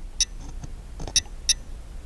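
Resolution Products RE304 wireless driveway alert sensor, just powered up by inserting its battery, giving short, high-pitched ticks: about a quarter second in, just past a second, and at about a second and a half. This is the sign that it is sending its enrollment signal to the alarm panel.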